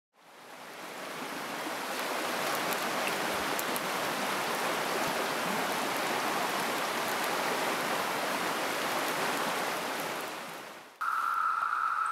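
Rushing water of a rocky stream, a steady hiss that fades in at the start and fades out just before the end. About a second before the end it cuts to the steady, high-pitched ringing of a Brood II periodical cicada chorus.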